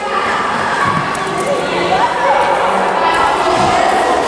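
Many children shouting and chattering at once: a dense, continuous din of overlapping young voices that starts suddenly.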